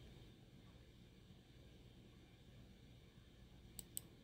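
Near silence: faint room tone, with two faint clicks near the end.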